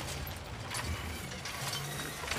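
Rope-and-pulley mechanism of a hanging iron cage working as the cage is hauled on its rope and chains: a steady low grinding with faint clicks.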